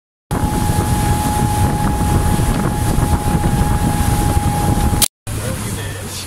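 Motorboat under way at speed: wind buffeting the microphone over the running engine and rushing water, with a steady whine. The sound cuts out abruptly about five seconds in.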